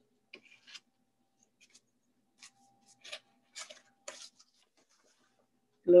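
Faint, scattered rustles and light ticks of folded cardstock greeting cards being handled and fitted together.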